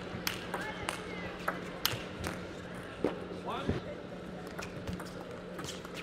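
A table tennis rally: the celluloid ball clicks sharply off bats and table about twice a second, with a few short squeaks in between. A steady low hum runs underneath.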